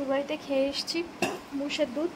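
A woman talking in short phrases, with a single sharp clink about a second in.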